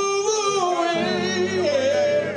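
Male R&B vocal group singing live in Motown style over instrumental backing, with long held notes and a wavering vibrato near the end.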